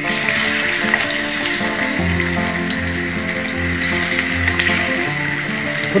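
Battered cauliflower pieces hitting hot oil in a kadai and deep-frying, a steady sizzle and bubbling that starts as they go in. Background music plays underneath.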